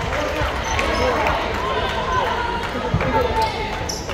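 Spectators' voices in a school gymnasium, with a basketball bouncing on the hardwood court as the shooter gets ready at the free-throw line.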